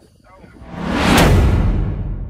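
A whoosh transition sound effect that swells up, peaks with a sharp hit just over a second in, then slowly dies away.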